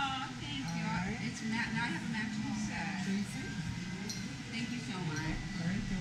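Indistinct conversation among several people.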